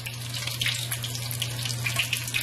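Battered fish fillets frying in hot oil in a skillet: a steady sizzle with fine crackles, over a low steady hum.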